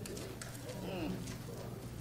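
Faint, low hummed 'mm' murmurs from congregation members, soft and gliding in pitch, over quiet room tone.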